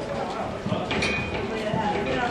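Indistinct voices of people talking in a gym hall, with a few light knocks.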